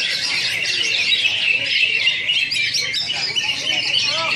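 Many caged green leafbirds (cucak hijau) singing at once: a dense, continuous chorus of quick, overlapping high chirps and warbles, with people's voices faintly beneath.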